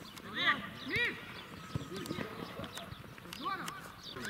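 Footballers calling out to each other on the pitch: three short shouted calls about half a second, one second and three and a half seconds in, with scattered light knocks from play on the grass.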